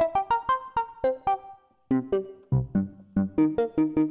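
Wavetable synthesizer on an Axoloti board, played from a ROLI Seaboard Block: a quick run of short, percussive notes, several a second, from an envelope set for a fast attack. The run breaks off briefly halfway through, then goes on with lower notes.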